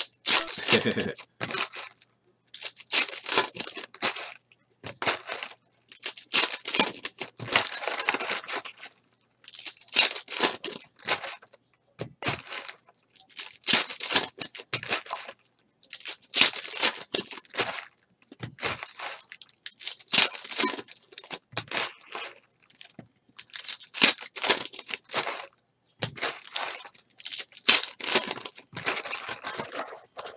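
Foil trading-card pack wrappers crinkling and tearing open by hand, in repeated bursts a second or two long, pack after pack.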